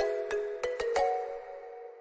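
Background music: a light, chiming melody of quick notes, about five in the first second, the last one fading away.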